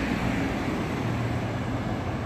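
Highway traffic noise: cars driving past, a steady hum of tyres and engines without any sharp events.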